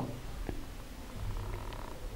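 A faint, steady low rumble of background noise in a pause between speech, with one faint click about half a second in.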